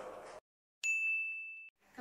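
A single high, bell-like ding sound effect, struck sharply about a second in and ringing on one steady pitch while fading, then cut off abruptly after under a second.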